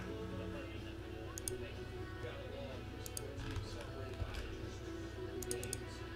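Faint background television audio, music and voices, over a steady low hum, with a few soft computer keyboard clicks, a little cluster of them near the end.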